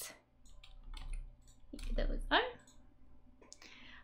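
A few light computer mouse clicks as the on-screen word list is moved along, with a short voiced hum about two seconds in.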